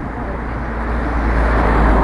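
A van driving past on the road. Its engine and tyre noise swells steadily and peaks near the end.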